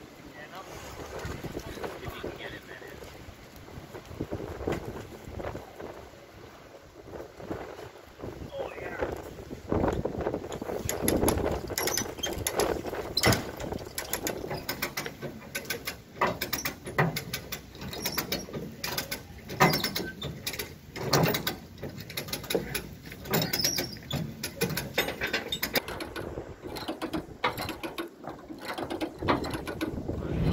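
A chain winch pulling an old car up a steel-grated ramp onto a car-hauler trailer: a run of irregular metallic clicks and clanks, sparse at first and much busier from about a third of the way in.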